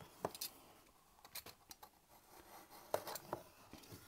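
Cardboard parcel box being handled and turned on a wooden table: a few faint, scattered taps and scrapes.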